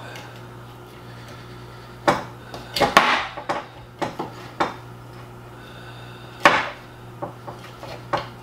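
Picking and scraping at the hard wax seal over the neck of a whiskey bottle: a handful of irregular scrapes and knocks, with a longer scrape about three seconds in and a sharp, loud one late on.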